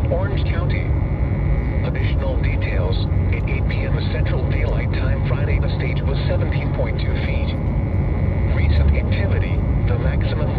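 A synthesized text-to-speech voice reading a NOAA Weather Radio broadcast, heard through a radio receiver, over a steady low rumble.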